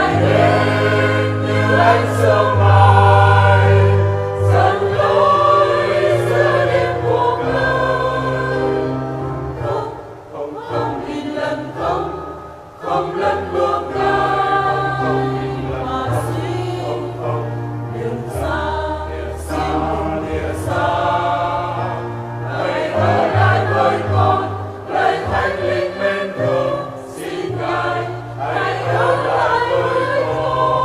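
A church choir sings a Vietnamese hymn to the Holy Spirit over an instrumental accompaniment that holds low bass notes, softening briefly about a third of the way in.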